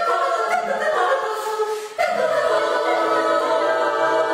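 Women's choir singing in several voice parts. The singing drops away briefly about halfway through and comes back on a long held chord.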